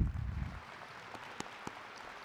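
Audience applauding in a large hall, with a low thump at the very start.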